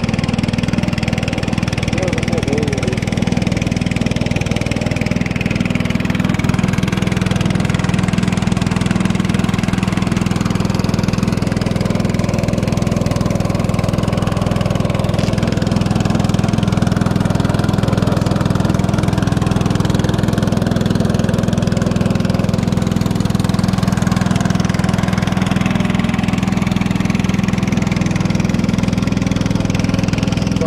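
Small river boat's motor running steadily under way, a constant low drone with no change in speed, with water rushing past the hull.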